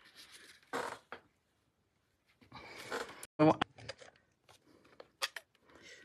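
Paper-crafting handling noises: card stock rustling and sliding on the work surface, with a few light clicks and taps of a clear acrylic stamp block on the table.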